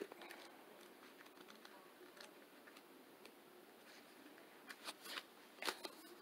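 Near silence of a small room, then, about five seconds in, a few short soft clicks and rustles of paper cards being handled.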